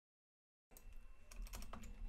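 Faint typing on a computer keyboard: irregular keystroke clicks that begin under a second in, after a moment of dead silence.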